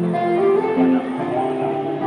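Strat-style electric guitar played live, a melodic line of held, overlapping notes.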